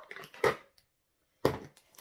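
Handling noise from baby items being moved and set down: a short rustle about half a second in, then dead silence, then a sudden knock-like sound about a second and a half in that fades out.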